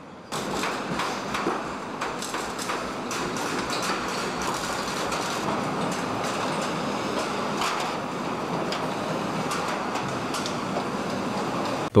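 Steady factory-floor noise from a robotic car-body assembly line: an even mechanical hiss and rumble with a few faint clicks and clatters.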